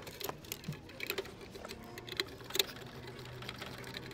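Scattered light clicks and taps of a screwdriver, plastic wire connectors and the control board being handled while a furnace control board is mounted, with a faint low hum in the second half.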